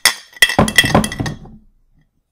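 Crash sound effect of a plate smashing: several clattering, ringing impacts that die away about a second and a half in.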